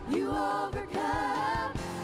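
Church worship team singing a gospel song: a male lead vocalist with a group of backing singers, over a band with a steady beat.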